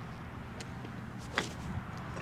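A golf club swung and striking a ball off the turf: one sharp crack about one and a half seconds in, with a faint tick before it.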